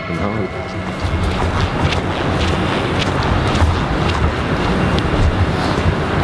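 Steady rushing, rustling noise on the microphone of a handheld camera carried along at a walk, with a low rumble underneath.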